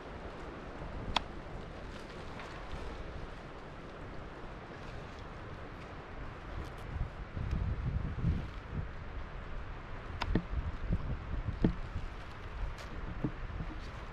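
Low wind rumble on the microphone over faint outdoor ambience, with a few sharp little clicks: a small knife cutting the woody root ends off a bundle of freshly dug ramps.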